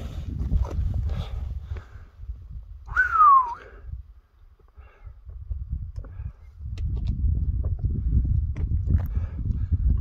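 Wind buffeting the microphone on an exposed mountain summit, a low rumble that eases for a couple of seconds mid-way. About three seconds in, a single short whistle-like note slides downward in pitch.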